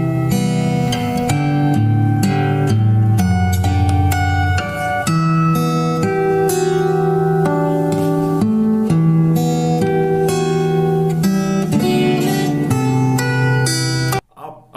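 Solo fingerstyle acoustic guitar playing a slow, sad melody with bass notes picked underneath, the notes left to ring.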